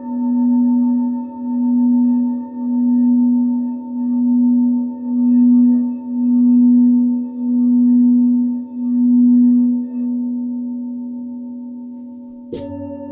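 Large frosted quartz crystal singing bowl being rimmed with a mallet, giving one loud, steady low tone that swells and fades about every second and a quarter. About ten seconds in the rimming stops and the tone rings on, slowly dying away.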